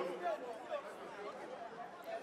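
Low chatter of several guests talking at once, a mixed babble of voices with no single speaker standing out.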